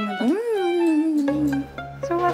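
A woman's voice in one long, drawn-out sing-song call that rises and then slides down, coaxing a toddler to repeat after her. Background music with a low bass comes in about a second in.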